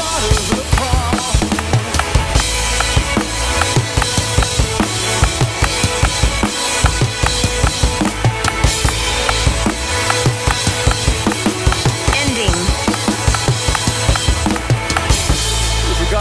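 Drum kit played live with a full worship band, heard through the drummer's in-ear monitor mix. Kick and snare keep a steady groove with cymbal hits, over bass and sustained keys.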